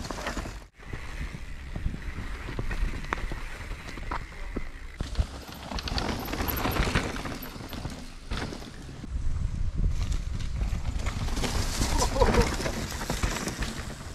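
Riding noise of a downhill mountain bike heard from a helmet camera as it descends a dirt trail: tyres on dirt, rattling and knocking from the bike, and a low rumble of wind on the microphone. It grows louder and busier about five seconds in and again near the end.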